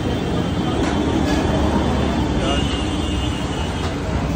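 Busy restaurant-entrance ambience: background voices chattering over a steady low rumble, with a few brief sharp clinks.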